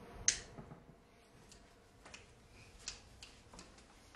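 Faint clicking: one sharp click about a quarter second in, then scattered light taps of a computer keyboard being typed on.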